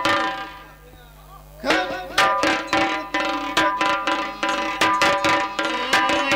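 Folk music with a dhol (two-headed barrel drum) beaten over sustained melodic tones. The music drops away just after the start and comes back in under two seconds in, the drum then keeping a quick, steady beat.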